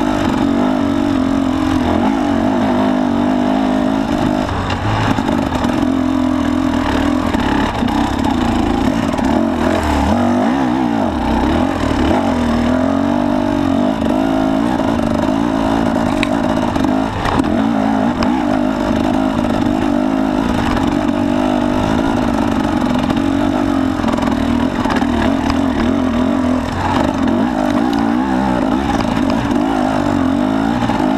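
Husqvarna enduro motorcycle's engine revving up and down continuously as the bike is ridden over a rough, rocky dirt trail, with occasional knocks and clatter from the bike.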